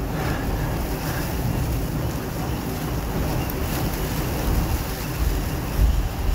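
Wind buffeting the phone's microphone: a steady low rumbling noise, with a brief louder low bump near the end.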